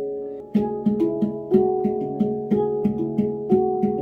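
Handpan played with both hands in a 3-against-2 polyrhythm, a melody on the upper tone fields over a repeating pattern on the lower notes. Evenly spaced struck notes, about three a second, each ringing on.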